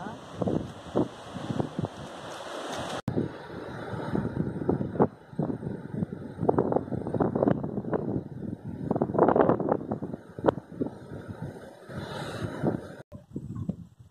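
Wind buffeting the microphone in irregular gusts, a rough rumbling rush that swells and drops. The sound breaks off abruptly twice, about three seconds in and near the end.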